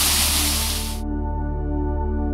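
Rushing water of a small waterfall, cut off abruptly about halfway through and replaced by ambient music of steady held tones.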